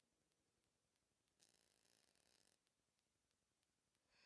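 Near silence: room tone, with one faint breath lasting about a second, starting about a second and a half in.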